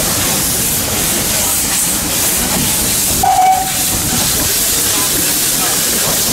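Narrow-gauge steam locomotive hissing loudly and steadily as steam blows out at track level from its open cylinder drain cocks while it pulls away. A brief whistle note sounds about three seconds in.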